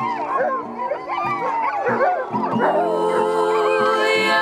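Several sled dogs howling together, their wavering howls overlapping, over background music. The howls thin out near the end as the music holds a steady chord.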